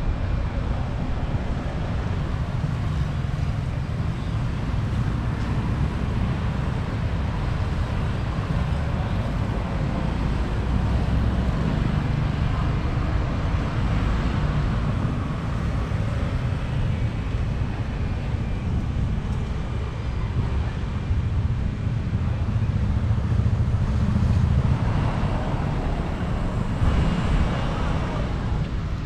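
Steady outdoor roadside ambience: a low rumble of passing traffic mixed with wind on the microphone, with no distinct single event.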